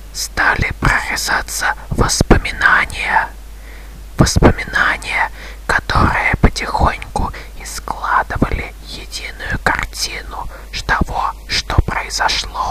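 A person whispering in short phrases separated by brief pauses; the words are not clear.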